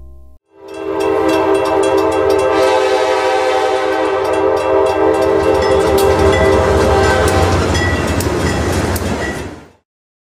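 Locomotive air horn sounding one long chord for about seven seconds over the rumble and clicking of a passing train. The horn stops shortly before the train noise cuts off near the end.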